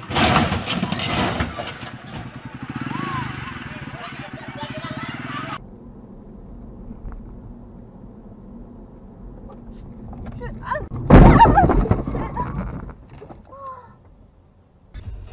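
A truck loaded high with sugarcane topples over with a sudden loud crash, with people shouting. After a cut, a car's steady road and engine noise heard from inside the cabin until a sudden, very loud collision about eleven seconds in, the loudest sound.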